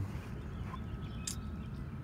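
Quiet outdoor background noise, mostly a steady low rumble, with one brief faint tick about a second and a half in.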